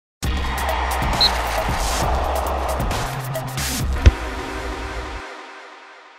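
TV channel logo ident music: a dense, busy sound stretch with sharp clicks, one hard hit about four seconds in, then the low end drops away and a reverberant tail fades out.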